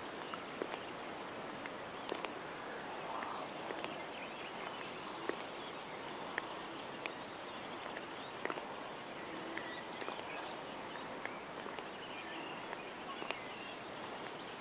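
Quiet open-air lake ambience: a steady soft hiss of light wind over rippled water, broken by scattered faint ticks.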